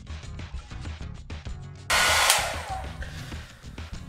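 Background music, then about two seconds in a handheld hair dryer starts blowing loudly, a rushing hiss close to the microphone, which dies down near the end.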